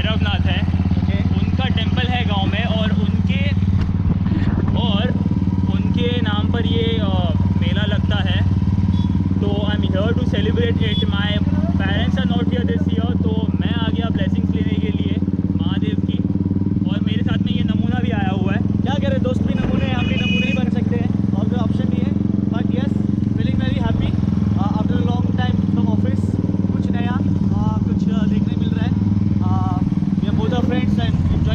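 Royal Enfield motorcycle engine running steadily at low speed, with people's voices over it.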